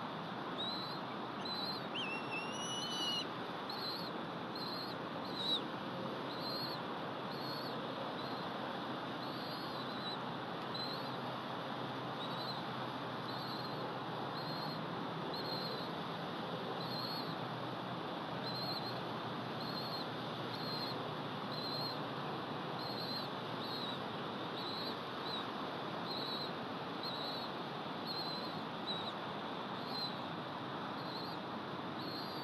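Bald eagle hatchling, out of the nest bowl and not being brooded, peeping over and over with a short high cheep roughly once a second. A longer, slightly rising whistle comes about two seconds in, over a steady background hiss.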